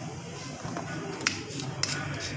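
Two sharp clicks, a little over a second in and again near the end, from small parts of a Denso alternator's rear cover being handled by hand, over steady background music.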